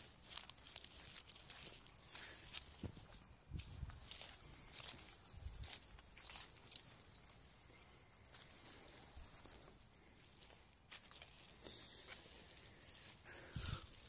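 Faint footsteps through grass and rustling of the handheld camera while walking outdoors, with soft irregular knocks. A steady, faint high-pitched insect drone runs underneath.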